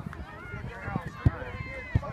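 Many voices chattering and calling at once, with two short low thumps partway through.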